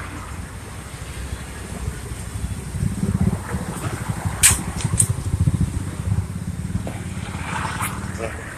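A motor vehicle engine running close by, its low pulsing rumble growing louder about two and a half seconds in and staying up until near the end. Two short sharp clicks about halfway through.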